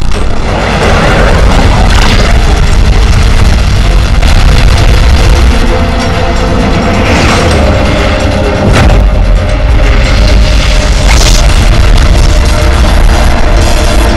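Loud film-score music with deep booming sound effects, for the blasts of glowing magical arrows clashing in an animated battle, and a few sweeping swells through it.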